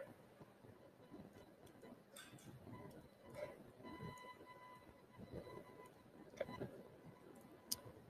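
Near silence: room tone with a few faint clicks and a faint, brief high hum about halfway through.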